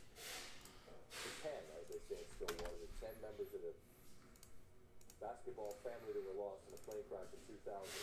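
Quiet computer keyboard and mouse clicking as data is pasted into a spreadsheet, under a faint murmur of voices.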